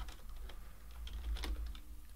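Typing on a computer keyboard: a few scattered keystroke clicks as a word is typed.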